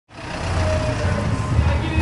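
A low rumble of road traffic with voices in the background, fading in from silence over the first half second.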